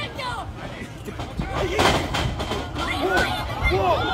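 Spectators shouting and calling out, with one sharp impact from the wrestlers in the ring about two seconds in.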